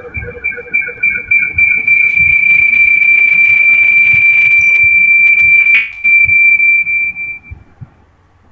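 A loud, steady, high-pitched whistle of audio feedback in a video call. It swells in pulses, then holds one piercing tone, breaks off for an instant about six seconds in, and fades out near the end.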